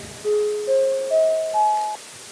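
Chime of four clear, bell-like tones rising step by step, each note fading as the next begins; the same rising figure repeats.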